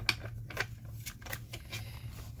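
Small hand-rolled die cutting machine being pushed and repositioned over its cutting plates, with a few light clicks and scraping of the plates and metal die. The stack is too thick for the roller to catch and roll through.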